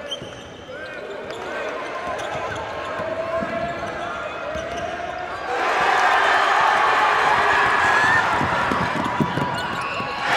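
Live game sound on a basketball court: a basketball dribbled on the hardwood floor and sneakers squeaking, under crowd noise from the stands. The crowd grows louder about halfway through.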